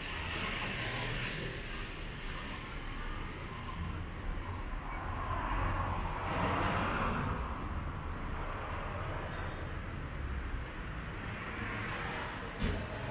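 Street traffic: a steady low rumble of vehicles, with one vehicle passing close by and swelling loudest about six seconds in.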